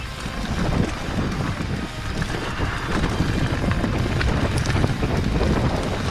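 Wind rushing over a GoPro's microphone as a 2017 Diamondback Atroz Comp full-suspension mountain bike rolls down a dirt singletrack, with its tyres crackling over dry leaves and the bike rattling on the rough ground.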